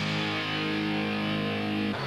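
Rock music sting: a single distorted electric guitar chord held steady for about two seconds, then cut off.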